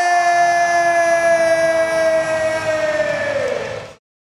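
Ring announcer belting out the winner's name "Ev Ting", holding the last syllable as one long shouted note that sags slightly in pitch and falls away near the end before cutting off suddenly.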